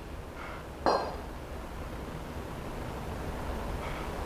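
Two kettlebells clink together once, about a second in, with a short metallic ring, over a steady low room hum.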